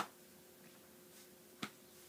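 Two short, sharp clicks about a second and a half apart, over the faint steady hum of a quiet room.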